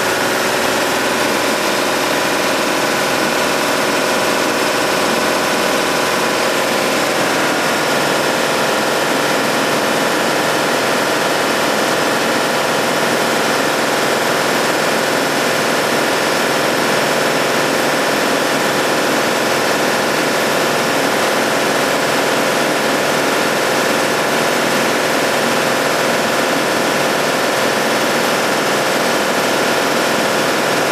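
High-pressure air compressor running loudly and steadily as it charges the station's steel storage tanks, with a slight shift in its tone about seven seconds in.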